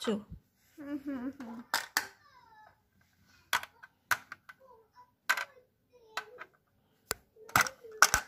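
Several sharp, irregularly spaced plastic clicks from a plastic snakes-and-ladders board game: marble pieces knocked into the board's hollows and the dice-popper dome pressed near the end.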